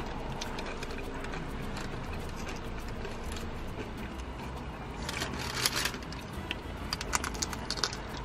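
Bites into a Burger King taco's crunchy shell and crinkling of its paper wrapper: a run of sharp crackles and clicks from about five seconds in, over a steady low hum.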